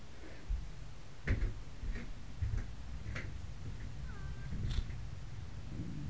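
Handling knocks, clicks and low bumps right at a helmet-mounted camera as the rider moves and handles his gear, about half a dozen sharp ones spread unevenly. A short squeak with a sliding pitch comes about four seconds in.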